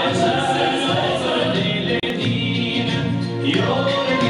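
Music with a group of voices singing, over a steady low accompaniment.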